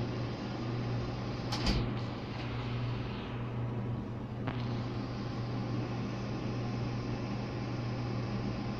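Steady low hum with a background hiss, with a brief knock a little under two seconds in and a short click about halfway through.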